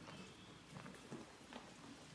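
Near silence in a horse's stall, broken by a few faint soft knocks of a horse shifting its hooves in bedding shavings.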